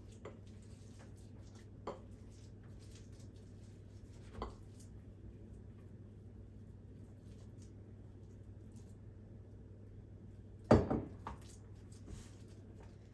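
Faint clinks and knocks of a glass mixing bowl against a plastic food container as salad is tipped and scraped out. Near the end comes a louder knock and clatter as the glass bowl is set down on the counter.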